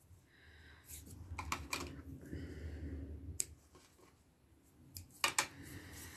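Faint handling noise of fingers working a small piece of handwoven band, with a few short sharp clicks and taps; a louder pair of clicks comes near the end.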